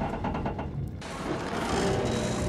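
Film sound effects of the starship Franklin dropping off a cliff: a dense rumble with a rapid rattling through the first second, then a steadier rushing noise, with the film's score low underneath.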